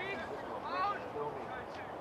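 Short shouted calls from rugby league players on the field, two brief shouts over steady outdoor background noise.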